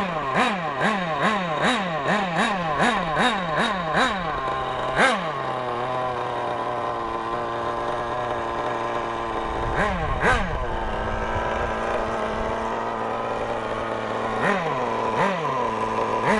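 Kyosho Inferno Neo nitro buggy's small glow engine, new and being run in, blipped in quick short revs about two and a half a second for the first four seconds. It then settles into a steady idle, broken by a pair of revs about ten seconds in and more short blips near the end.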